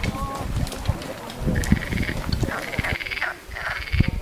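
Frogs calling in pulsed, buzzing trills, three calls in the second half, over low thumps like footsteps on a dirt track.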